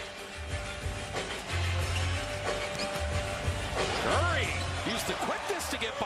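Live NBA game sound in a large arena: a basketball being dribbled on the hardwood court, with music playing over the arena PA and crowd noise. There are low thumps about a second and a half in and again about four seconds in.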